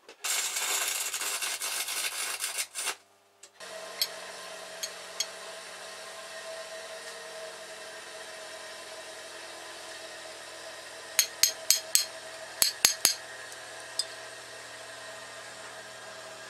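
Pibotec RS1 band saw cutting wood, a loud hissing rasp that stops suddenly about three seconds in. After that a steady, quieter machine hum carries on, with a quick run of sharp clicks about two-thirds of the way through.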